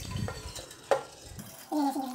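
Soaked broken rice with its water sliding and being scraped by hand out of a steel bowl into an aluminium pressure cooker, with one sharp metal knock about a second in.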